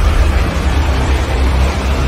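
Cinematic logo-intro sound design: a loud, steady deep rumble with a noisy hiss over it.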